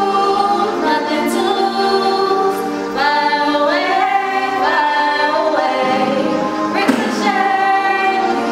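Two women singing together into a microphone, holding long notes that slide between pitches.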